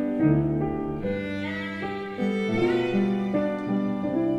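Bowed violin playing a slow melody of held notes, with lower accompanying notes underneath.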